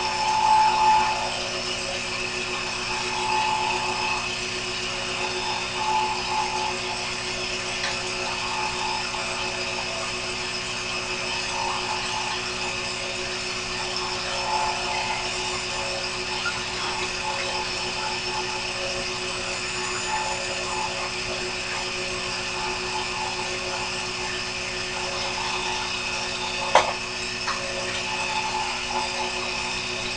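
Mini metal lathe running steadily with a constant motor whine while the cutter turns a bronze workpiece. A single sharp click comes about 27 seconds in.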